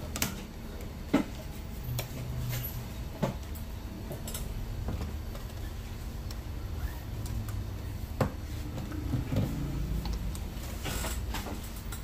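Scattered light clicks and knocks of small barber's tools and bottles being handled and moved about on a cluttered workstation and in its drawer, a few seconds apart, over a low steady hum.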